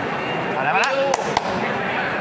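Background chatter in a large hall, with a voice speaking Thai about halfway through, and two sharp clicks about a fifth of a second apart just after it.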